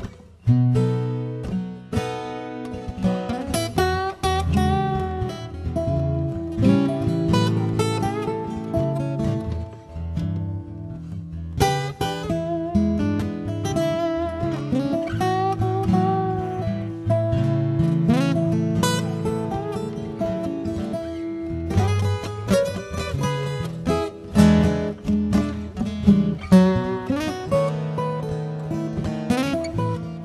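Maton acoustic guitar fingerpicked in an instrumental acoustic blues break, a run of plucked notes with a few short gaps.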